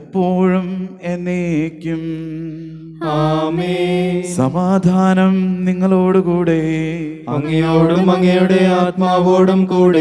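Liturgical chant of the Holy Qurbana: a voice singing a prayer in long, wavering phrases over a steady low held note, softer for a moment about two seconds in.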